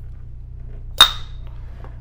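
The stator of an XCELL Turbine 6565 brushless outrunner motor snapping home into its rotor can: one sharp metallic clack about a second in, with a brief high ring.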